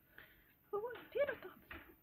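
A high-pitched voice makes brief, indistinct vocal sounds for about a second in the middle, after a faint short rustle near the start.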